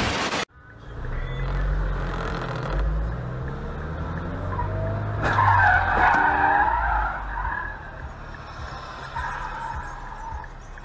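A brief burst of TV static, then a car engine revving and tyres squealing, loudest about five to seven seconds in, as vehicles skid through an intersection.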